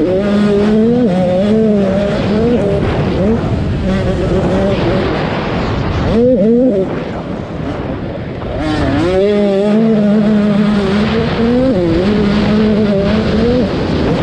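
An 85cc two-stroke motocross bike engine is revved hard, its pitch climbing and dropping repeatedly with the throttle and gear changes. There is wind rush on the helmet camera. About halfway through, a sharp rev spike cuts off and the engine goes quieter for a second or two, then revs back up hard.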